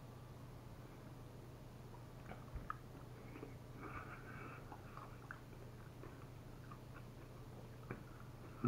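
Faint clicks and light rustling from handling a glass hot sauce bottle and a fork, with a few small ticks scattered through.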